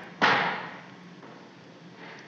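Boots of a marching column striking a hard floor in step, one loud footfall about a quarter-second in, ringing out in a large reverberant hall.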